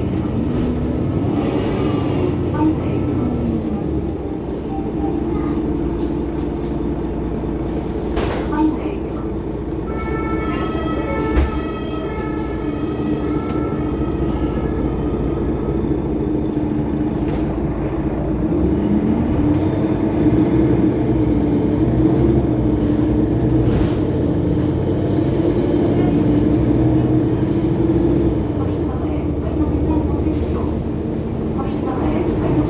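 Mercedes-Benz Citaro Facelift city bus running, its engine and driveline humming steadily. The pitch drops near the start as it slows, then climbs about two-thirds through as it pulls away and stays louder after. There is a single knock a little over a third of the way in.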